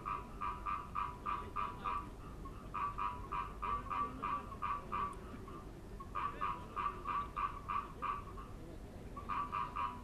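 A frog calling: trains of evenly spaced pulsed calls, about four or five a second, in bouts of two to three seconds separated by short pauses.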